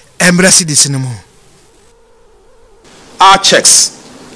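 Speech: a voice in two short bursts, the first falling in pitch, with a pause of about two seconds between them.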